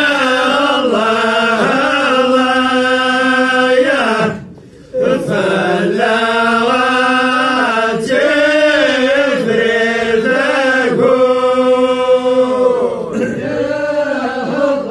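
Voices chanting in long held notes that slide from pitch to pitch, with a short break for breath about four seconds in.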